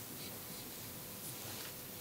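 Faint, soft scratching of a cotton swab working inside an ear canal, picked up close by a microphone next to the ear.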